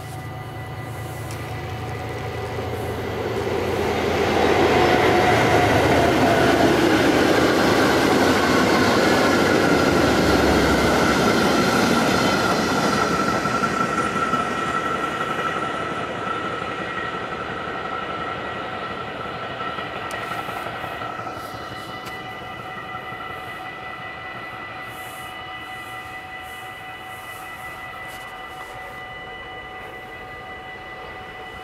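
A diesel locomotive hauling a freight train of Fccpps hopper wagons passes. The engine rumble grows as it approaches, and the rolling noise of the wagons is loudest about five to thirteen seconds in, then fades away as the train recedes.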